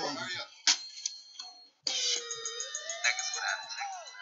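A recorded hip-hop track starting suddenly about two seconds in, played through a speaker: a gliding tone that dips and then rises, over a fast, even ticking beat.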